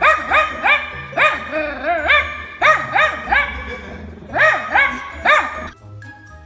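Small dog barking in quick runs of high-pitched barks, each rising and falling in pitch, with a short pause in the middle. Background music runs underneath.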